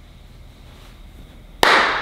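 Low room tone, then near the end a sudden loud burst of noise that dies away over about half a second.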